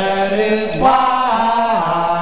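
Doo-wop vocal group singing in close harmony. Several voices hold long notes together, shifting pitch as one about a second in and again near the end.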